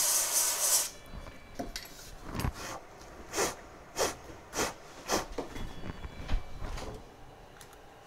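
A can of freeze (ice) spray hisses in a loud burst about a second long onto an iPhone 8 logic board, then gives a run of short bursts about one every half second. The frost it leaves is used to find a shorted component on the VDD_MAIN rail, which shows itself by melting the frost first.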